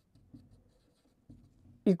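Faint scratching of a marker pen writing on a whiteboard, with a couple of light ticks. A man's voice starts just before the end.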